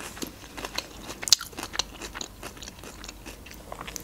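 Close-miked mouth sounds of a person chewing a mouthful of sushi roll: a run of short, irregular wet clicks and smacks, the loudest about a second and a half in.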